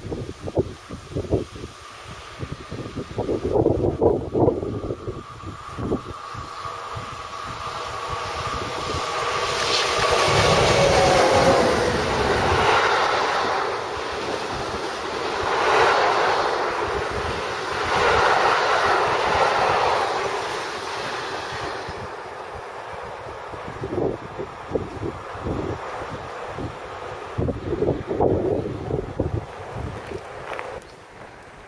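Freight train of tank wagons hauled by an SNCF BB 26000-class electric locomotive passing close by: the noise builds as it approaches, with steady tones from the locomotive as it goes by about ten seconds in, then the rumble and clatter of the wagons, fading after about twenty seconds. Wind gusts on the microphone near the start and end.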